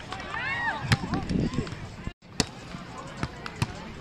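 A volleyball struck by players' hands and arms during a beach volleyball rally: sharp slaps on the ball, the loudest about a second in and again halfway through, with lighter ones near the end. Players' voices are heard around them.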